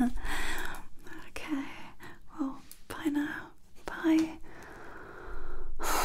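A woman whispering close to the microphone in short breathy phrases. Near the end comes a long, loud sigh.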